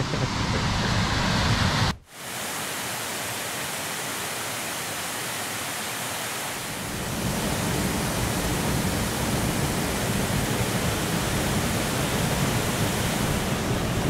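Small waterfall pouring into a pool: steady rushing water with a brief break about two seconds in. It grows a little louder from about seven seconds in.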